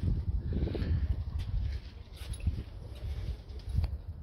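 Footsteps on paving and handling noise from a hand-held camera being carried: a low rumble with a few faint, irregular knocks.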